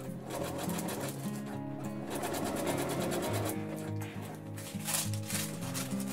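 Background music, with a Minerva DecorProfessional sewing machine stitching through layers of wool drape fabric under it. The machine runs for about three seconds and then stops.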